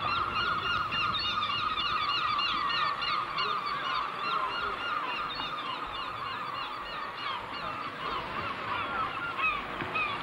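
A flock of gulls calling: many short cries overlap one after another, loudest in the first few seconds.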